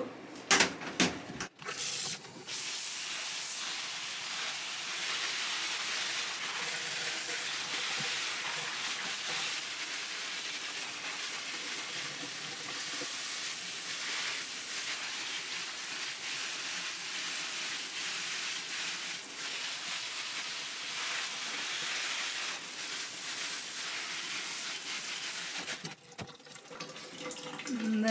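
Handheld shower head spraying water onto potted plants in a bathtub: a steady hiss of spray on leaves, soil and pots. It starts about two seconds in after a few clicks and stops near the end.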